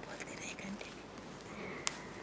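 Soft cloth rustling and handling noises close to the microphones as a badge is pinned onto a garment, with one sharp click near the end.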